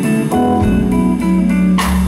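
Live band playing a slow soul ballad with no vocal, guitar to the fore over a strong bass, with a sharp hit near the end.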